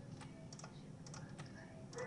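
Several faint, irregular clicks from a computer mouse and keyboard over a low, steady room hum.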